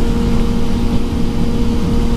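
Kawasaki ZX-6R inline-four engine running at steady cruising revs, its even drone holding pitch throughout, under heavy wind rush on the helmet-mounted microphone.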